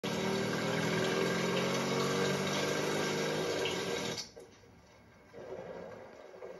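Steady rain on a wet street with a low, even drone underneath, both cutting off suddenly about four seconds in. Near the end, quieter scratching of a pen writing on a paper card.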